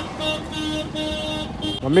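A vehicle horn honking repeatedly in a busy market street: a run of four or five short toots at one steady pitch. A voice calls out just at the end.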